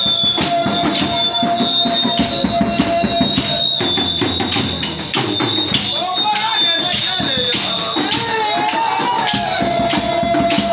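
Live worship music: fast percussion with shakers and drums driving a dance beat, with voices singing over it from about six seconds in. A steady high-pitched tone runs underneath throughout.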